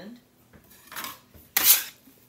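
A metal bench scraper scraping across a wooden board: one short, loud rasp near the end, after a faint soft rub about a second in.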